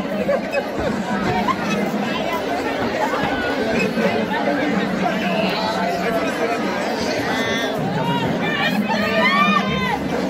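Large crowd chattering and calling out in a big hall, many voices overlapping. Several voices whoop and shout near the end.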